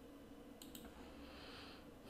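Two faint computer mouse clicks in quick succession, about two-thirds of a second in, over near-silent room tone.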